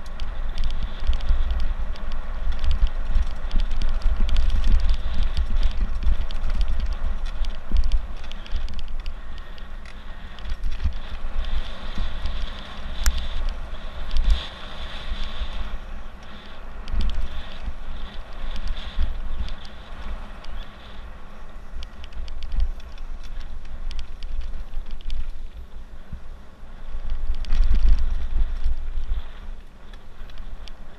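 Mountain bike ridden fast over a gravel forest trail: wind buffeting the microphone in a surging low rumble, with tyre crunch and short rattles and clicks from the bike over bumps. The buffeting is loudest about four seconds in and again near the end.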